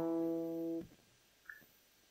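A single note plucked on an acoustic guitar: the E an octave above the root of an E-minor barre chord, picked as a lone string. It rings steadily and is muted about 0.8 s in.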